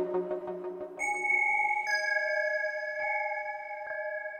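Korg Prologue synthesizer: a pulsing, rhythmic patch fades out over the first second, then a bell patch sounds a sustained, bell-like note about a second in, and a second note joins about a second later and rings on.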